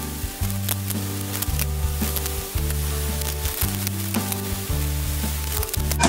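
Paella of rice and shellfish sizzling and bubbling in a pot on the hob, with small crackles through a steady hiss. Background music with a bass line that changes note about once a second runs underneath.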